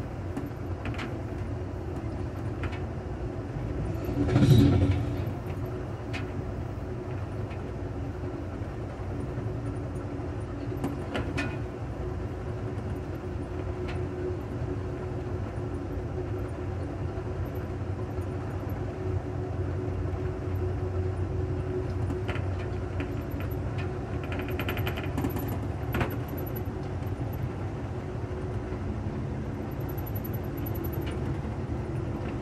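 Steady low rumble of a moving Amtrak passenger train, heard from inside the rear car with the recorder pressed against the back window, with occasional faint clicks. About four and a half seconds in there is a brief, louder rushing jolt.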